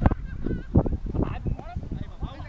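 Several people's voices shouting and calling out on a football pitch: short cries from players and onlookers overlapping one another. A sharp click sounds at the very start.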